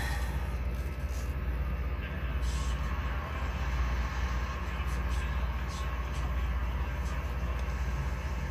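Spray booth exhaust fan running with a steady low hum and an even rush of air.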